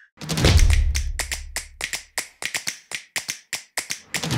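Intro logo sound effects: a deep bass hit just after the start, lasting over a second, with a rapid run of sharp clicks or taps, about four a second.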